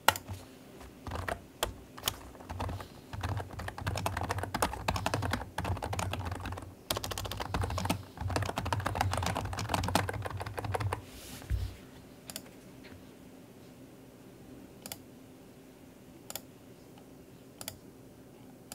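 Computer keyboard typing: a fast, dense run of keystrokes for about ten seconds, then a few scattered single key clicks.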